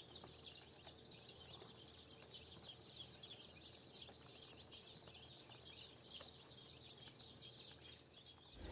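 A crowd of day-old chicks peeping together, many short, high, falling chirps overlapping continuously. The sound is faint.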